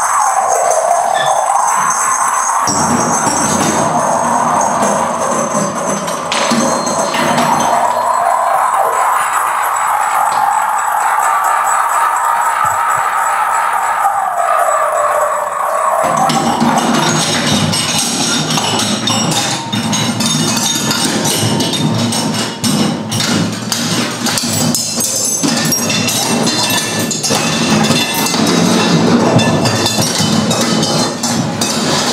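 Improvised percussion on a metal singing bowl resting on a drum head and worked with a stick, giving a ringing tone that wavers and bends up and down for about sixteen seconds. After that a dense clatter of small metallic and wooden strikes and scrapes takes over.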